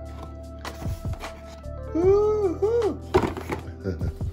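Background music with steady tones, and a voice singing a few sliding notes about halfway through. Several short, dull knocks come from a cardboard box being handled as it is opened.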